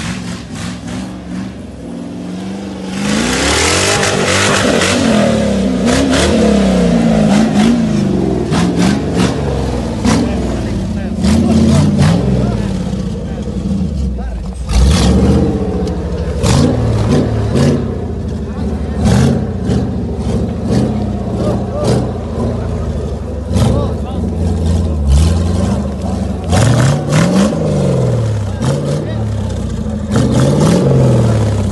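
Off-road competition vehicle's engine revving hard over and over, its pitch repeatedly rising and falling, under load climbing a steep dirt slope. Many sharp cracks and clicks run through it, with a rush of noise about three seconds in.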